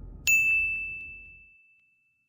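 A single bright bell-like ding from an end-card logo sound effect, struck about a quarter-second in and ringing out as one high tone that fades over about a second and a half, with two faint ticks just after the strike. The low tail of a whoosh fades out beneath it at the start.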